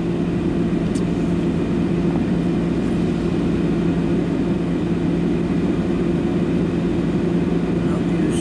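Steady hum of a car heard from inside its cabin, coming to a stop and idling at a red light; the level stays even throughout with a constant low drone.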